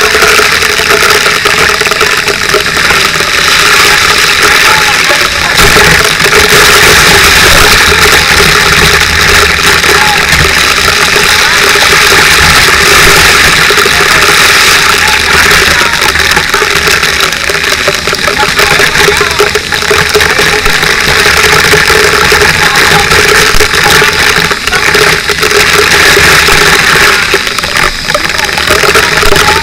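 Fire hose nozzle spraying water at high pressure: a loud, steady rushing hiss with a faint steady high tone running through it.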